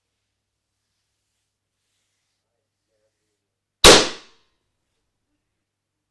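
A single sharp, loud bang about four seconds in, dying away within half a second, of the kind the householder calls 'the nasty, loud one' and cannot place.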